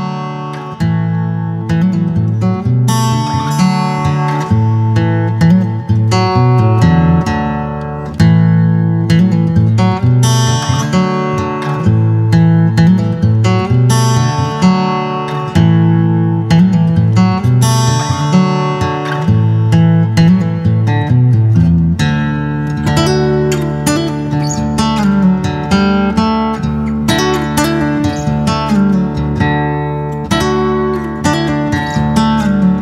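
Background music: strummed acoustic guitar playing a steady chord pattern.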